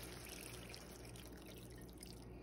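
Chicken broth poured from a plastic measuring cup into a skillet of browned chicken, a faint steady trickle and splash of liquid.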